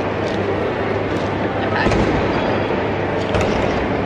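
Busy café background: a steady hum and hubbub of indistinct voices, with a few faint clicks.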